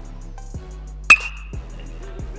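Background music with a steady drum beat. About a second in, an aluminium bat meets the ball with a single sharp ping that rings briefly.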